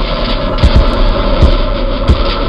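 Motorcycle running at low parade speed, heard through a bike-mounted camera as a loud, steady noise. From about half a second in, a few sharp knocks come through, loud enough to clip.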